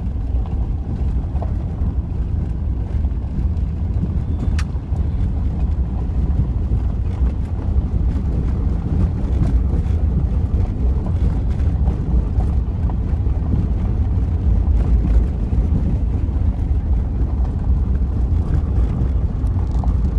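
Off-road vehicle driving slowly on a gravel road: a steady low rumble of engine and tyres on gravel, with a sharp click about four and a half seconds in.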